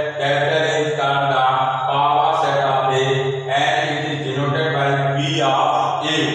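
A man's voice lecturing continuously, with a steady low hum underneath.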